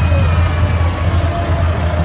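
John Deere 6R-series tractor's diesel engine running steadily as it passes, a deep, even drone, with faint voices over it.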